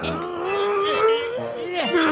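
A cartoon character's wordless voice: one long, strained, closed-mouth hum that rises slowly in pitch, followed by short falling vocal sounds near the end.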